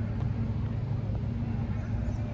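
Steady low machine hum, even throughout, with a few faint high chirps above it.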